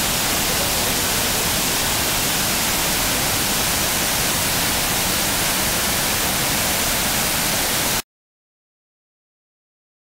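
Waterfall on the River Bran: a steady, even rush of white water that cuts off abruptly about eight seconds in.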